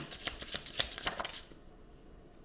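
A deck of oracle cards being shuffled by hand: a quick run of light card flicks for about a second and a half, then it stops.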